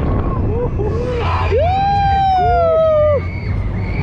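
Riders screaming on a swinging fairground thrill ride: a few short yells, then one long scream from about a second and a half in, over a steady low rumble of wind and ride motion.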